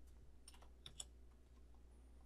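A few faint computer keyboard clicks, light key taps about half a second to a second in, over near-silent room tone.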